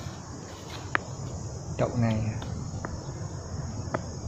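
A steady high-pitched insect chorus, with a single sharp click about a second in.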